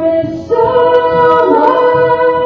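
A woman singing a slow folk song, with a new long held note beginning about half a second in, over acoustic guitar accompaniment.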